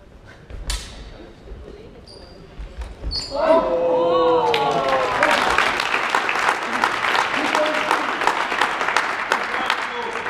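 One sharp clack of a longsword strike, then shouting voices and a burst of applause with cheering that fills the rest of the time, echoing in a large hall.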